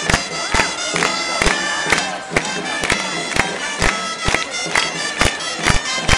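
Catalan giants'-dance music: gralles, shrill double-reed shawms, play a melody over a drum struck about twice a second.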